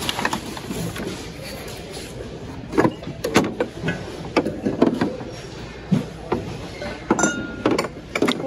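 Ceramic and glass items clinking and knocking against each other and the plastic bin as they are handled, in a string of separate sharp clinks. These sit over a steady background hum.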